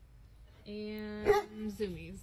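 A dog's voice: one held call of about half a second, then a shorter call that falls in pitch near the end.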